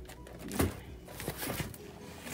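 Cardboard being handled: a strapped bundle of flat cardboard boxes knocked and scraped inside a shipping carton as it is tugged at. One dull knock comes about half a second in, then a few lighter taps.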